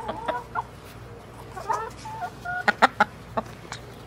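Backyard chickens clucking in short calls, with a few sharp clicks in the second half.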